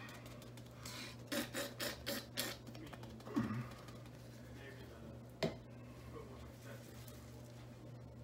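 Gloved hands handling and squeezing a plastic glue bottle: a quick run of soft taps and rustles a second or so in, then one sharp click about five and a half seconds in, over a low steady hum.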